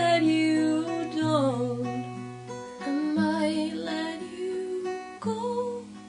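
Acoustic guitar strummed as the accompaniment to a voice singing a slow pop melody in short phrases; it grows quieter near the end.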